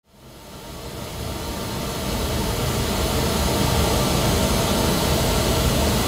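Pink noise test signal from Smaart's signal generator, played into the room. It starts quietly and is turned up over the first couple of seconds, then holds steady and loud. The level is being pushed until it is at least 20 dB above the room's noise floor, for maximum coherence.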